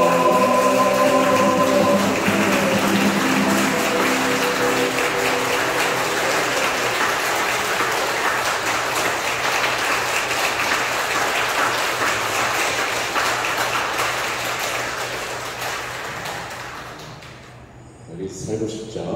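The final held note of a sung song with acoustic guitar fades out in the first couple of seconds, overtaken by a congregation applauding, which dies away near the end.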